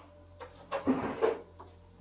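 A few short knocks and rubbing sounds from items being handled at an open refrigerator as a plastic milk bottle is taken out.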